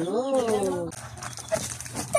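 A person's long, drawn-out vocal exclamation, rising then falling in pitch, for about the first second, followed by faint rustling of a paper gift bag and wrapping being handled.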